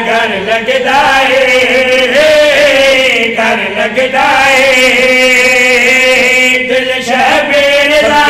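Several men's voices chanting a Punjabi devotional refrain together into a microphone, in long drawn-out notes that bend slowly in pitch.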